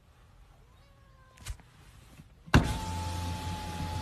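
Car's electric power window motor lowering the side window: it starts abruptly about two and a half seconds in with a steady hum and a steady whine.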